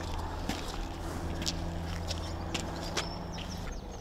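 Scattered footsteps on a wet tarmac yard over a steady low hum.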